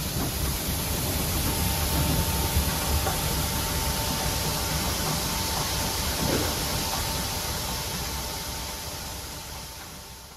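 Barley pouring from a tipping trailer into a concrete grain pit: a steady rushing hiss of grain over a low machine rumble, with a faint steady whine from about a second and a half in. The sound fades away over the last couple of seconds.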